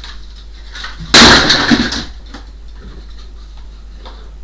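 A sudden loud clatter, about a second long, about a second in, as things are shifted on top of a wooden wardrobe, with a few faint knocks around it.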